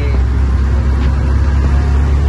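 Truck's diesel engine running steadily at cruising speed, heard from inside the cab as a loud, even low hum.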